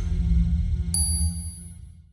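Logo-reveal sound effect: a low bass drone, with a single bright ding about a second in that rings on, all fading out at the end.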